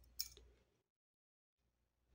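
Near silence, with one faint short tick just after the start.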